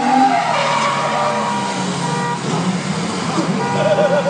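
A sports car doing donuts: the engine is held at high revs while the rear tires spin and skid, squealing steadily on the pavement.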